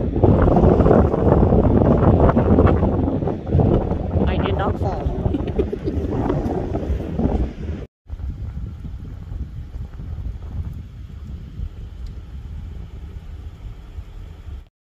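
Wind buffeting the microphone outdoors, a loud, rough rushing for about the first eight seconds. After an abrupt break it gives way to a quieter, steady low rumble.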